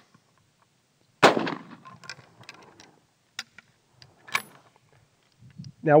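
A single rifle shot from a Trapdoor Springfield rebarrelled for .30-40 Krag, about a second in, with a decaying echo. It is followed by a few sharp metallic clicks, the last and loudest a little over four seconds in, as the single-shot action is worked and the breech block flipped open.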